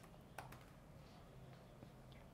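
Faint computer keyboard keystrokes: a few separate clicks, the clearest about half a second in, over near-silent room tone.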